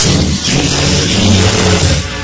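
A loud sound effect laid over the film score: a sudden rushing burst, then a heavy low rumble for about two seconds that cuts off abruptly.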